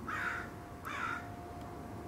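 A crow cawing twice, about a second apart.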